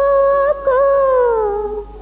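Female playback singer holding one long sung note with a little waver, which dips briefly about half a second in and then slides down in pitch over the second half, dropping away near the end.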